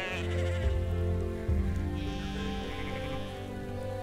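Sheep bleating, with one longer wavering bleat about halfway through, over background music of long sustained notes.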